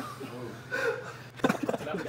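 Low voices of people talking, with a few short clicks or knocks in the second half.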